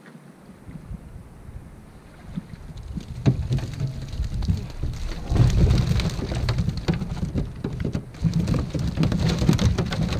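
Cast net full of gizzard shad being hauled up over a boat's side: water running and dripping from the mesh and fish flapping in it, with a low rumble underneath. It grows louder from about three seconds in.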